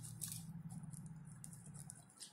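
Ballpoint pen writing on paper: faint, quick scratching strokes as a word is written.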